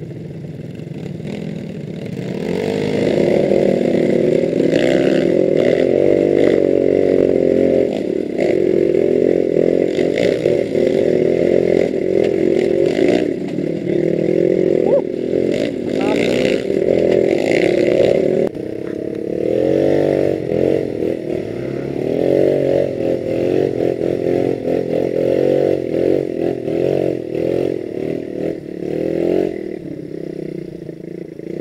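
Trail motorcycle engine running under riding load, its pitch rising and falling as the throttle is opened and closed, with rattling from the bike over the rough track. It gets louder about two seconds in.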